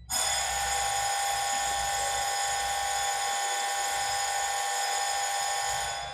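Electric bell ringing loud and steady for about six seconds: it starts abruptly, then stops and rings out briefly.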